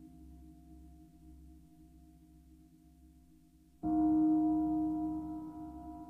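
A struck bell ringing with steady tones and fading, then struck again nearly four seconds in, ringing out louder and slowly dying away.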